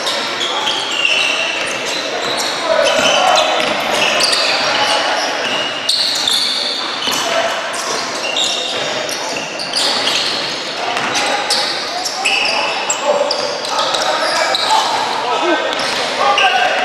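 Basketball game sounds in a gym: sneakers squeaking in many short high-pitched chirps on the hardwood court, the ball bouncing, and players and spectators calling out.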